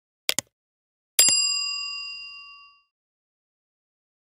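A short double click, then about a second in a bright bell ding that rings on several clear tones and fades away over about a second and a half. This is the click-and-bell sound effect of an animated subscribe button with a notification bell.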